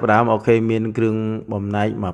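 Speech only: a man talking in long, fairly level-pitched phrases.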